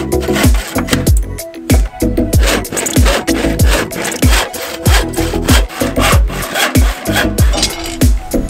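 Handsaw cutting through a plywood board in repeated rasping strokes, mixed with background music that has a steady thudding beat.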